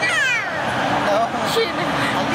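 A toddler's high-pitched squeal that falls steeply in pitch over about half a second, followed by softer voices.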